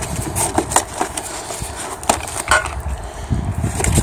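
Handling noise from a cardboard parts box: packing paper rustling and a few light knocks and clicks from the box and parts being moved, over a low rumble.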